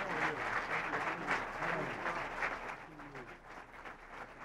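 Audience applauding, with a few voices heard over the clapping; the applause thins out and grows quieter in the last couple of seconds.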